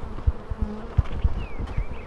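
Honeybees buzzing around an opened hive, with a few low thumps from the hive boxes being handled.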